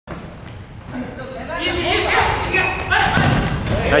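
Futsal play on a wooden indoor court: ball kicks and thuds and short high sneaker squeaks, with players' shouts that grow louder toward the end as a shot goes into the goal.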